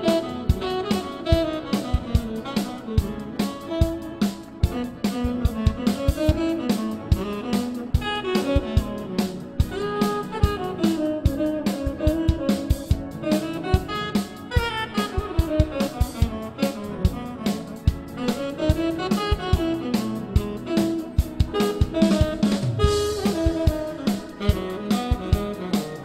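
Bebop-style jazz with a drum kit keeping a busy beat under a fast, winding melody line.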